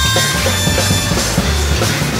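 Live progressive rock trio of keyboards, bass guitar and drums playing a fast instrumental, with synthesizer notes that slide in pitch over a pulsing bass line.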